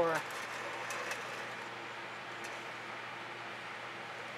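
Steady low hum and hiss of background noise, with a few faint clicks.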